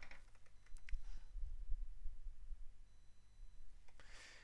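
A quiet room with a few faint computer mouse clicks in the first second and a soft low thump about a second in.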